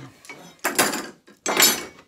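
Two short metallic clattering scrapes, each about half a second long, from the aluminium Festool MFS rail and its fittings being handled and shifted.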